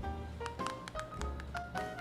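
Light background music of short plucked notes stepping upward in pitch, with sharp taps at the note onsets.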